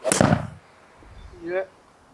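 Golf club striking a ball off a hitting mat in a full swing: one sharp, loud crack just after the start, with a short tail.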